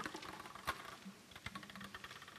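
A few light clicks and taps, about three-quarters of a second apart, from papers being handled at a podium, with a faint murmur of voices in the hall behind.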